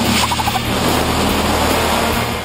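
Racing car engine running loud, with a quick burbling run of pulses near the start.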